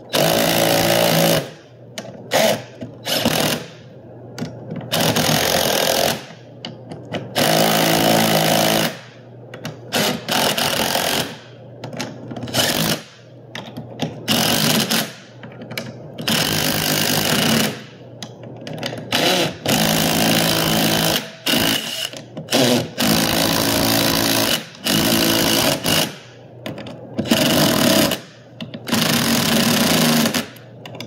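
Cordless impact driver hammering in repeated bursts of a second or so with short pauses, running 3/8"-16 bolts into freshly tapped holes to fasten a steel door-stop bracket tight against the frame.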